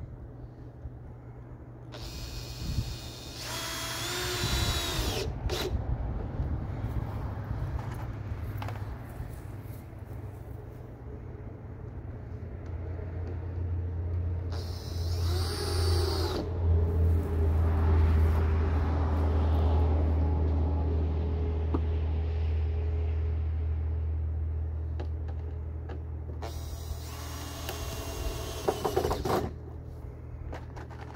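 Cordless drill driving screws into wooden boards in three runs of a few seconds each, the motor's whine rising as it spins up and dropping as it stops. Between the second and third runs a low steady drone swells and fades.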